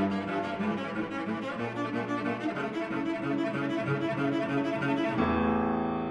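Instrumental background music led by low bowed strings with piano; about five seconds in it changes to a sustained chord.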